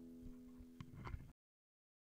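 Faint steady hum with a few soft clicks and knocks, cutting off abruptly just over a second in.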